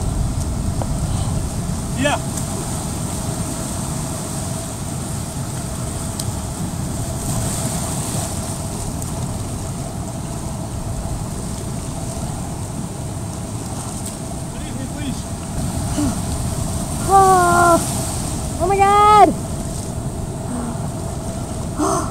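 Steady rumbling noise of wind on the microphone and shallow surf at the water's edge. About three-quarters of the way through, two short high calls rise and fall in pitch, one right after the other.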